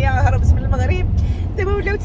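A woman talking over the steady low rumble of road and engine noise inside the cabin of a moving car.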